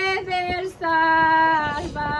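An older woman singing a devotional hymn without accompaniment, holding long drawn-out notes, with a brief breath a little under a second in before the next held note.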